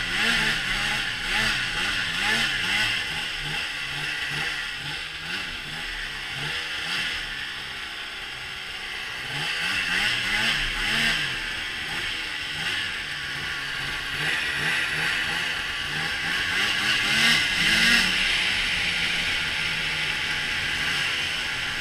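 Snowmobile engine running under way, its pitch repeatedly rising and falling as the throttle is worked, over a steady hiss. It is loudest near the end.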